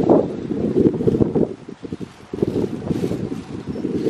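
Strong, gusty wind buffeting the microphone: a loud, low, fluttering noise that rises and falls, easing briefly about two seconds in.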